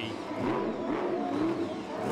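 Monster truck's supercharged V8 engine revving, its pitch rising and falling.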